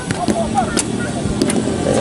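A bowstring snapping once as a traditional bow is shot, a short sharp crack. Voices of people around the range chatter over a steady low rumble throughout.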